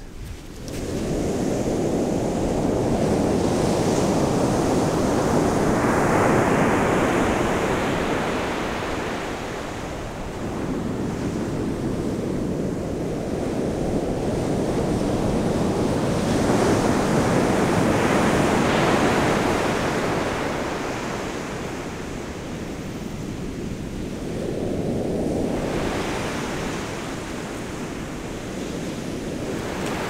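Ocean surf breaking on a beach: a steady rush of waves that swells and eases in about three slow surges.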